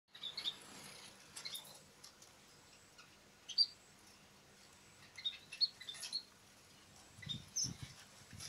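Munias giving short, high chirps, singly or in quick clusters of two or three, every second or two.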